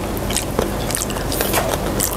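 Close-miked eating of spicy chicken feet: wet chewing, biting and lip smacking, heard as many small irregular clicks. A low steady hum runs underneath.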